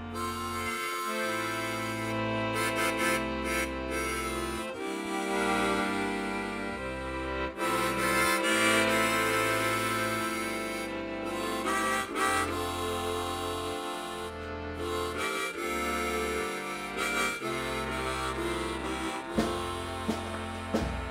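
Hyper-accordion playing an instrumental introduction: held reed chords over a low bass note that steps to a new pitch every second or two. A few drum strikes come in near the end.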